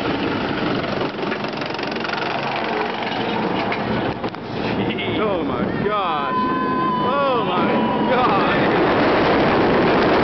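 Wind rushing over the microphone and the running noise of an inverted steel roller coaster train going through its loops, with riders screaming from about five to eight seconds in. It grows louder toward the end.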